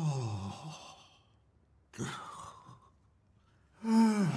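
A man's sighs: one falling sigh at the start, a breathier sound about two seconds in, and a louder falling sigh or groan near the end.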